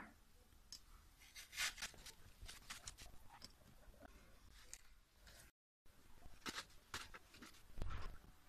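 Faint rustling and light clicks of artificial hydrangea flowers and stems being handled and pressed into the arrangement, in irregular bursts, broken by a brief dead gap past the middle.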